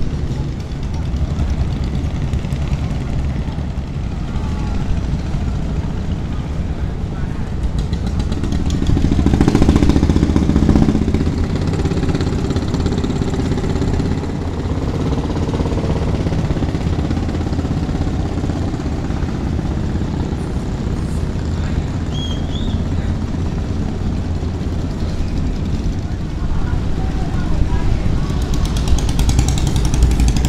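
Boat engines running steadily on the river, a low, even engine drone that grows louder around ten seconds in, with people's voices in the background.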